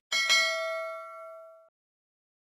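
Notification-bell sound effect from a subscribe animation: a bright bell ding struck twice in quick succession, ringing and fading, then cut off about one and a half seconds in.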